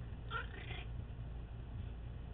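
A dog gives one short, high whine, about half a second long, while the two dogs play. A steady low hum runs underneath.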